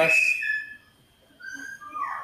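A few short, high whistle notes, each held at a steady pitch, the later ones a little lower.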